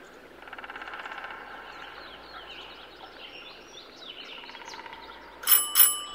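A bicycle bell rung twice in quick succession near the end, the loudest thing here, over birds chirping, with a fast light ticking in the first second or so.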